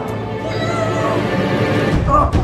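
Background soundtrack music: steady held low notes with a wavering, gliding higher tone over them.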